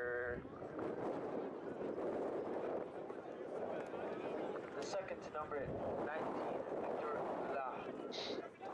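Distant voices of players and spectators calling and shouting on an outdoor field, over a steady background murmur.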